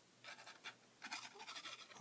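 Faint, intermittent scratching of a plastic super glue bottle's nozzle on a strip of cardstock as glue is squeezed out onto it.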